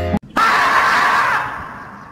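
The 'screaming marmot' meme sound: one long drawn-out scream that starts just after the music cuts off and slowly fades away.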